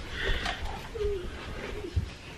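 A few short, soft vocal sounds from a person's voice, each falling in pitch, about a second in and again shortly after, over light handling noise, with a small knock near the end.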